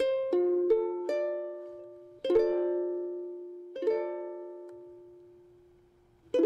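Ukulele sounding a D minor chord: its four strings are plucked one after another in the first second, then the whole chord is strummed twice and left to ring and fade.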